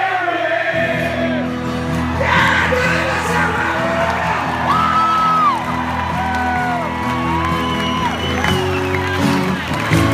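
Rock band playing live and holding sustained chords, with the crowd whooping, whistling and cheering over it.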